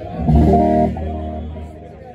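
Electric guitar played through an amplifier: a chord rings out about a quarter second in, holds briefly, then fades away.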